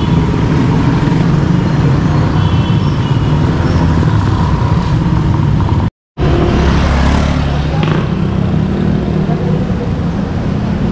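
Town street traffic: a minivan's engine passing close, with motorcycle and tricycle engines around it. The sound drops out for a moment about six seconds in, then the street traffic carries on.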